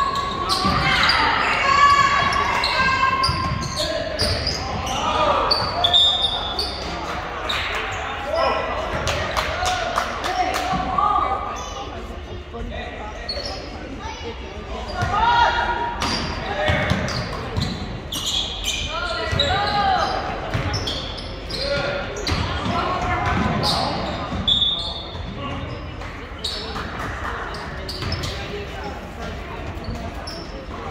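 Live indoor basketball game: a basketball bouncing on a hardwood court, sneakers squeaking, and players and spectators shouting, all echoing in a large gym.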